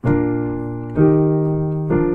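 Piano playing block chords, three struck about a second apart and each left to ring and fade, establishing B flat as the key.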